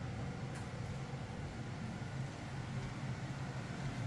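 Steady low rumble and hiss with a faint hum underneath, unbroken and even in level.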